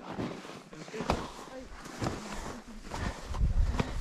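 Ski boots and skis crunching and knocking in trampled snow, with several sharp clicks. Near the end comes a low buffeting of wind on the microphone.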